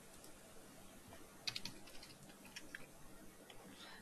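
Faint computer keyboard typing: a quick run of keystrokes about a second and a half in, then a few single key taps.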